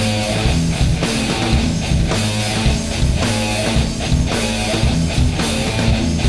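Heavy stoner-rock band playing: a distorted electric guitar riff over bass and a steady drum beat.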